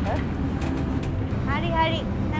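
Steady low rumble of a bus running, heard from inside the passenger cabin. A woman's voice starts speaking about one and a half seconds in.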